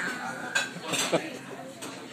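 Cutlery clinking against plates and dishes a few times, about half a second and a second in, over low background voices.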